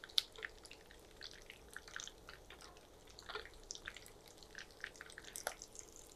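Hot oil shallow-frying coated, stuffed pointed gourds, giving faint, irregular crackles and pops.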